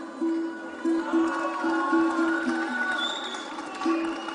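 Live band music with an acoustic guitar picking a short repeated note about three times a second, other held tones sounding above it.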